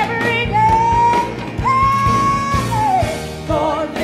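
A woman singing over a band backing, holding a long high note, then another, before a quick falling vocal run near the end.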